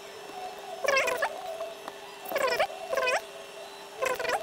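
Three short pitched calls whose pitch bends, like an animal's voice, about a second in, then twice more near the end, over a faint steady hum.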